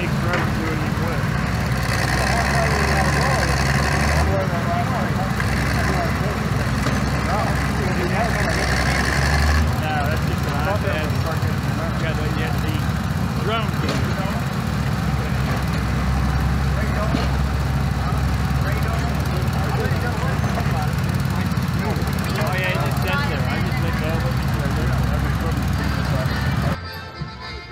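Small engines of compact garden-tractor backhoes running steadily while the machines dig trenches, working harder for a couple of seconds about two seconds in and again about eight seconds in.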